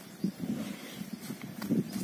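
A Jallikattu bull horning and digging into a mound of loose earth, a training exercise for the horns. Soil scrapes and thuds in short, irregular bursts that grow louder about a quarter second in and again near the end.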